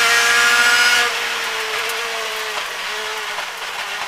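Rally car engine at high revs under full throttle, heard from inside the cabin. About a second in, the driver lifts off, and the note drops in level and slowly sinks in pitch as the car brakes and shifts down for a tight hairpin.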